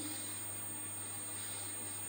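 Steady faint background hiss with a low hum and a thin high-pitched whine: room tone in a pause between words.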